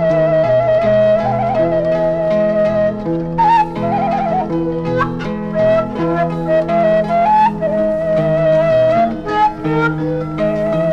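Sundanese suling (bamboo flute) playing a slow melody in sorog mode, with long held notes and quick wavering trill ornaments, about a second in and again around the middle. Under it an 18-string kacapi zither plucks an accompaniment.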